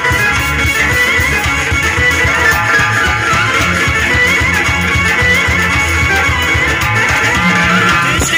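A live band plays an instrumental passage: a guitar melody over a steady bass and drum pulse.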